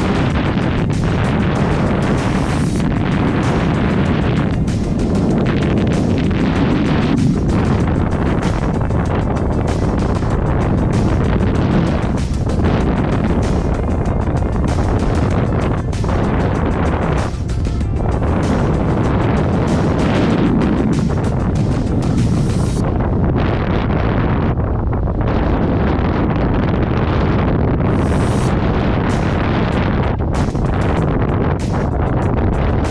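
Steady wind rushing and buffeting over the camera's microphone during a tandem parachute descent, with music playing under it.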